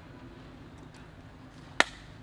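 A single sharp snap or click near the end, over a steady low background hum, with a few faint ticks before it.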